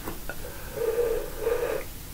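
A man's faint breathy vocal sound, about a second long, in a pause between words.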